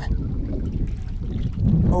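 Low, steady rumble of wind buffeting the microphone out on an open fishing boat.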